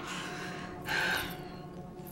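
A woman's breathy exhales: a soft one at the start and a louder, sharper one about a second in, over faint sustained background music.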